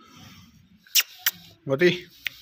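Two sharp clicks about a second apart's third of a second, followed near the end by a short, low-pitched vocal sound from a person.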